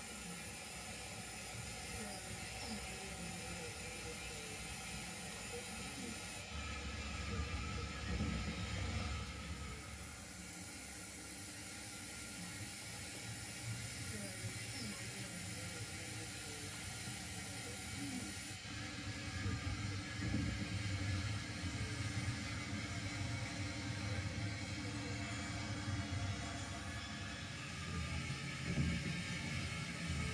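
0 gauge model train running on the layout's track: a low, continuous rumble of motor and wheels under a faint hiss, heavier for a few seconds about a quarter of the way in and again through the latter part.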